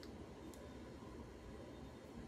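Quiet room tone: a steady low background rumble and hiss, with a couple of faint clicks near the start.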